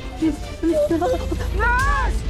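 A woman with a breathing tube whimpering and moaning in distress. Her short cries rise and fall in pitch, small at first and louder from about halfway through, over background music.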